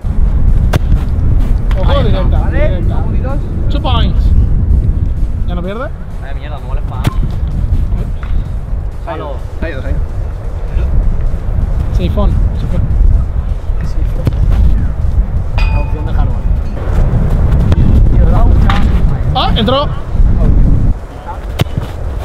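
Heavy wind buffeting the microphone, heard as a loud steady low rumble. Over it come indistinct shouts from players and a few sharp knocks of footballs being kicked.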